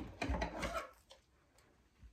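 Faint rubbing and a few light clicks of hands and scissors working at a garden-hose wreath while plastic zip ties are trimmed. It fades to near silence about halfway through.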